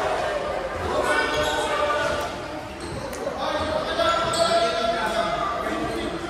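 Volleyballs thudding off hands and bouncing on a hard gym floor at scattered moments, echoing in the hall, over a steady babble of young players' voices.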